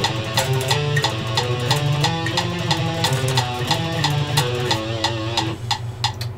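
Electric guitar playing a fast alternate-picked sixteenth-note exercise at 180 beats a minute, with steady metronome clicks keeping the beat. The rapid notes stop shortly before the end.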